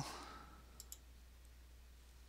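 Two faint computer-mouse clicks close together, a little under a second in, over near-silent room tone with a low hum.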